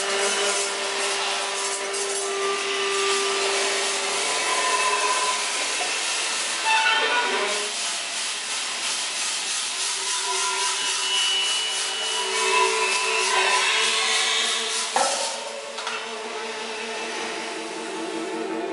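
Free-improvised electro-acoustic ensemble music: dense rubbing and scraping textures over several held tones. A falling glide comes about seven seconds in, and a sharp strike near fifteen seconds, after which the texture thins and grows quieter.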